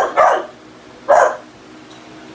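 American Bulldog barking: three short barks, two close together at the start and one more about a second in.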